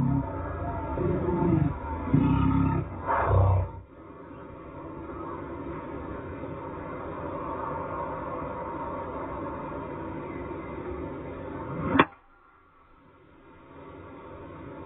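Gallery cheering and roaring for the first few seconds after a holed putt, dying away to quiet course ambience. About twelve seconds in comes a single sharp crack of a golf club striking the ball on a tee shot.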